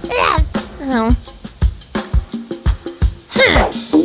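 Cricket chirping sound effect, a steady pulsing high trill: the cartoon gag for an awkward silence after a flop. A few short gliding vocal sounds break in, near the start, about a second in and near the end, over soft regular taps.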